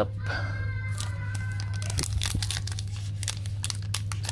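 Plastic foil wrapper of a Donruss basketball trading-card pack crinkling in quick, irregular crackles as it is handled and torn open, over a steady low hum.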